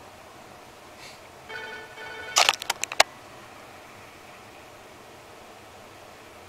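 A dashcam being turned by hand on its mount: a brief pitched squeak, then a quick run of about six sharp clicks and knocks right at the microphone.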